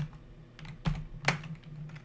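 A few separate keystrokes on a computer keyboard while coding, sharp clicks spaced out rather than fast typing, over a low steady hum.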